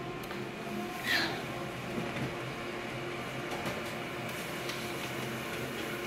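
Multifunction office photocopier running a two-colour (black and green) copy job: a steady mechanical hum, with a brief louder sound about a second in.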